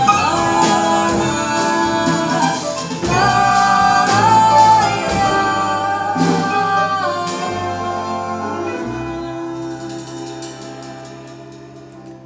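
Live small jazz band: a woman singing long held notes over drum kit with cymbals, double bass, guitar and piano. In the second half the band sustains a final chord and low bass note that slowly fade away as the song ends.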